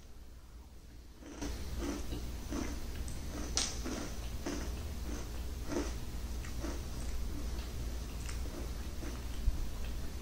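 A person chewing a mouthful of crunchy ring cereal in milk. Starting about a second and a half in, there are irregular soft crunches and mouth clicks over a steady low background.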